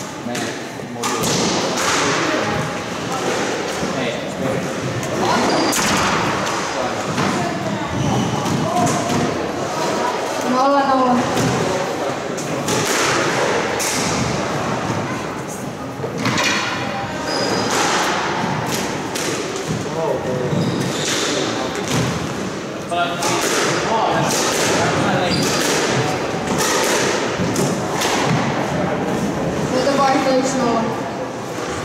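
Squash ball being struck back and forth in a rally: repeated sharp hits of racket, walls and floor, echoing in the court, with people talking in the background.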